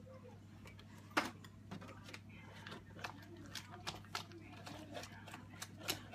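Hand whisk beating Yorkshire pudding batter in a plastic jug as milk is added: quiet, irregular clicks and taps of the whisk against the jug, with one sharper knock about a second in.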